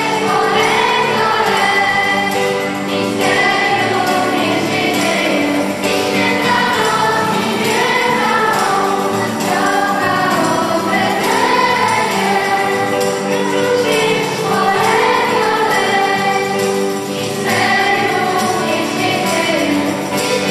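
A girl soloist sings a Polish Christmas carol into a microphone, accompanied by an electronic keyboard. A choir sings along with her.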